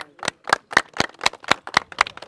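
Hands clapping in a steady rhythm, about four claps a second.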